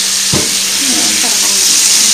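Hot oil sizzling steadily in a frying pan as battered pieces deep-fry, with a single knock about a third of a second in.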